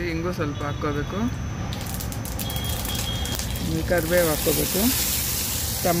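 Mustard seeds sizzling in hot oil as they are tempered, the hiss building from about two seconds in.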